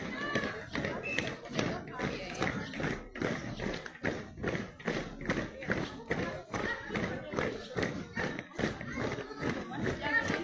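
A parade's marching beat: steady thumps about twice a second, with voices of children and onlookers around it.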